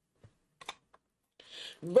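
Tarot cards being handled on a tabletop: about four faint clicks and taps as cards are picked up and set down, with a short soft hiss near the end.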